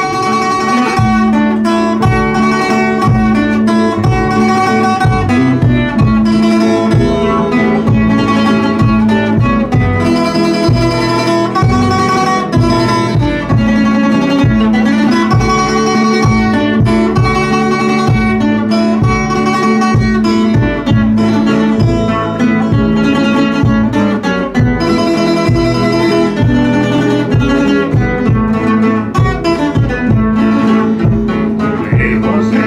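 Two nylon-string classical guitars playing an instrumental passage together, with continuous plucked and strummed notes.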